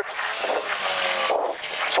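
Toyota AE86 Corolla rally car's engine running hard at speed with tyre and road noise, heard from inside the stripped cabin.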